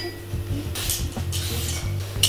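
Two soft scraping strokes of a vegetable peeler shaving skin off a fresh cucumber, one about a second in and one just after, over a faint steady hum.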